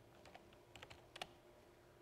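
Faint computer keyboard typing: a handful of scattered keystrokes, the clearest about a second in, as a search term is typed in.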